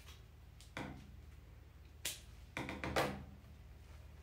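Scissors snipping the excess twine off a tied bouquet: a few short, sharp clicks, one about a second in, another around two seconds, then a quick cluster of snips near three seconds, the loudest of them.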